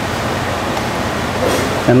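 Steady, even hiss of commercial-kitchen air handling. The knife quartering the soft hard-boiled egg makes no distinct sound.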